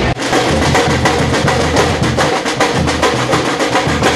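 Samba percussion group playing strapped-on bass drums and snare-type drums, a fast, even stream of drum strokes that starts abruptly.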